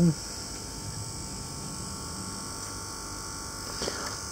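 Steady hiss with a low electrical hum from running rework-bench equipment.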